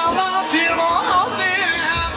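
Loud dance music with a wavering, heavily ornamented lead melody over steady accompaniment, played through loudspeakers.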